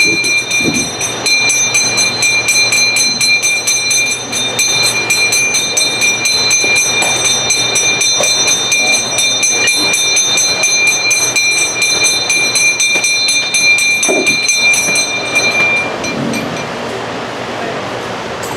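A brass temple bell rung rapidly and without a break during the puja, its ringing tones held steady over the fast strikes of the clapper. The ringing stops about 16 seconds in.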